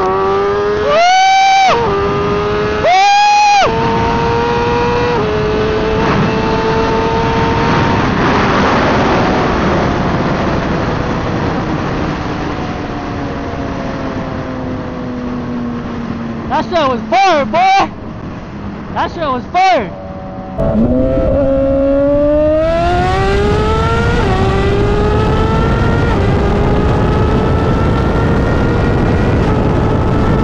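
Suzuki GSX-R1000 inline-four engine being ridden hard through the gears: the pitch climbs, eases back and then climbs again near the end, with wind rushing over the microphone. A few short, very loud shouts cut across it early on and again a little past the middle.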